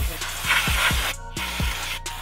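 Aerosol brake cleaner spraying in a hissing burst of about a second that cuts off sharply, then a softer spray after a short break. Background music with a steady beat plays under it.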